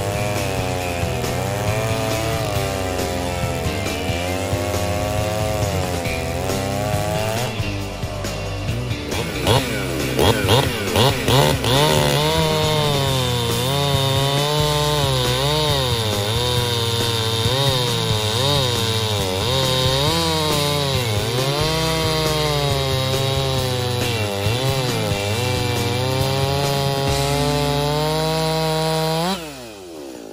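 Stihl chainsaw cutting through a log under load, its engine pitch sagging and recovering as the chain bites. About ten seconds in it gives a few quick revs before cutting on. Near the end the throttle is released and the engine falls away to idle.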